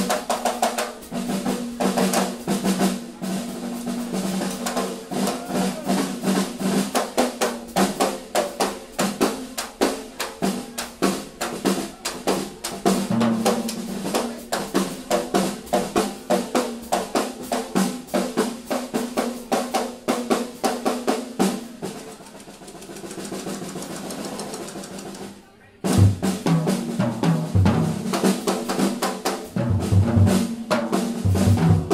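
Live jazz quartet with the drum kit loudest: fast, busy snare rolls and cymbal strokes over a bass line. About 22 seconds in the playing thins to a soft cymbal wash, the sound drops out for a moment, then the band comes back in at full strength.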